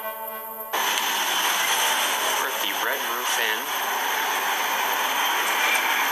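Music that cuts off abruptly under a second in, followed by a steady loud hiss of background noise, with brief faint voice sounds about halfway through.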